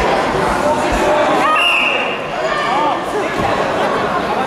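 Voices of spectators and coaches talking and calling in a large sports hall, with a couple of dull thuds from the wrestlers on the mat in the first second. About halfway through, a short, shrill blast of the referee's whistle.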